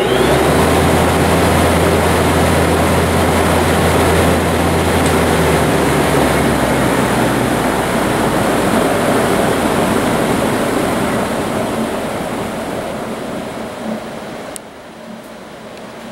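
Binks 34-inch tube-axial exhaust fan, belt-driven by a 5 HP three-phase electric motor, running at speed. It makes a loud, steady rush of air over a low motor hum. The sound fades away over the last few seconds.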